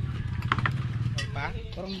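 Brief, faint voices over a low steady rumble, with a laugh near the end.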